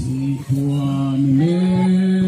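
Voices singing together in long held notes, chant-like, with the pitch stepping up partway through.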